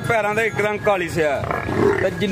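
A man talking, with a short rough noise near the end.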